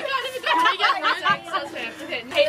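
Several young people talking over one another, chatter and laughter around a card game.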